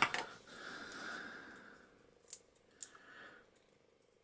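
Small handling sounds of a metal crocodile clip and its plastic sleeve being fitted by hand: a faint rubbing, then two sharp little clicks about half a second apart.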